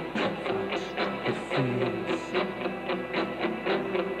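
Live rock band playing a short instrumental passage without singing: electric guitar, bass and drums keeping a steady beat.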